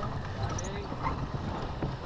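Steady wind and water noise aboard a sailboat under way, with a low rumble on the microphone and faint crew voices.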